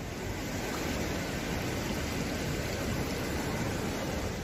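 Steady rushing of fast-flowing floodwater running through a street.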